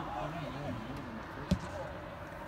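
Several voices shouting and calling across a soccer field, overlapping. About one and a half seconds in comes a single sharp thump of a soccer ball being kicked.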